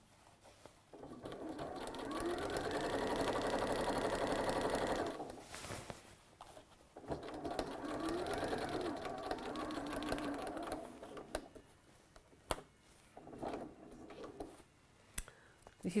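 Electric domestic sewing machine stitching slowly through cotton fabric in two runs of a few seconds each, with a pause between them; its motor pitch rises and falls within each run. A few light clicks follow near the end.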